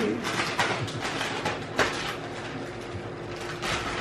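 Crinkling and rustling as a diaper and baby-wipes packaging are handled, in a quick run of short crackles.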